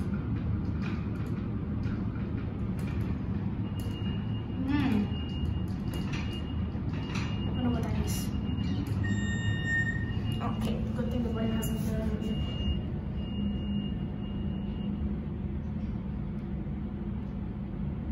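Inside a slow MEI hydraulic elevator car on the way down: a steady low rumble of the car's travel, shaky and rattling, with a hum that grows stronger about halfway through. A faint high steady tone sounds through the middle, with a brief higher beep about nine seconds in.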